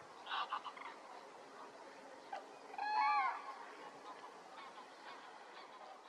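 Geese honking: a few rough honks in the first second, then one louder, clearer call about three seconds in, followed by fainter calls.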